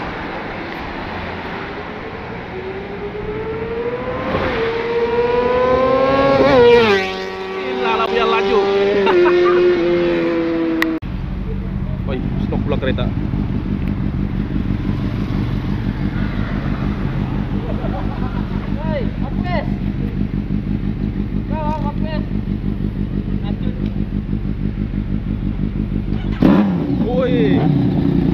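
A sportbike engine rising in pitch as it accelerates, then falling steadily as it slows. After an abrupt cut, a motorcycle idles steadily with an even, rapid pulse.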